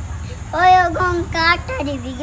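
A young child singing a Malayalam song solo and unaccompanied, coming in about half a second in with held, steady notes, over a low background hum.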